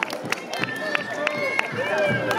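A man's voice declaiming loudly in short, drawn-out phrases, over a steady beat of sharp knocks about four a second.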